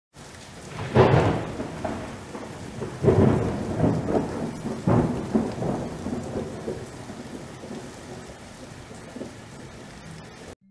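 Thunder rumbling over steady rain: three loud crashes about one, three and five seconds in, each dying away, with the storm fading toward the end.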